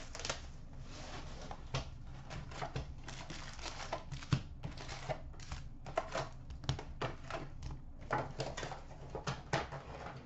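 A cardboard box of hockey card packs being opened and its wrapped packs pulled out and stacked by hand: irregular rustling, crinkling and light taps.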